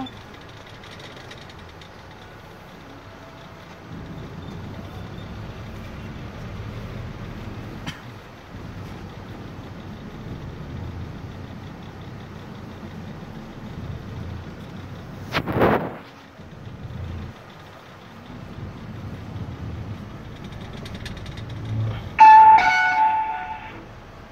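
Cabin noise inside a car driving slowly: a steady low engine and road rumble. About fifteen seconds in there is one short, sudden loud noise, and near the end a loud, steady pitched tone sounds for about a second and a half.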